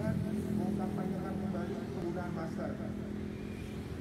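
A person speaking in short phrases over a steady low rumble of road traffic.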